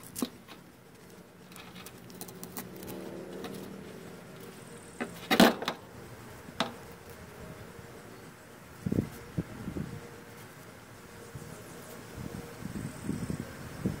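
Handling noises from cutting and pulling apart a silk cocoon by hand: a sharp metallic click about five seconds in, as the folding knife is handled and set down on the table, a smaller click a second later, then a few soft thumps. A faint steady hum lies underneath in the first few seconds.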